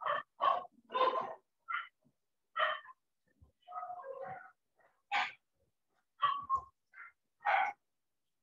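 A run of about a dozen short animal calls, each a fraction of a second, spaced unevenly with silence between them. The loudest come a little after five seconds and again near the end.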